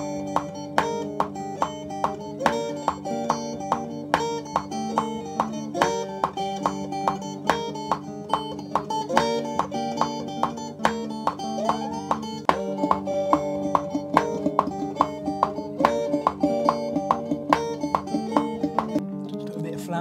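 Squier Stratocaster electric guitar playing a melodic line of single picked notes in a steady rhythm, two to three notes a second, with the notes ringing into one another.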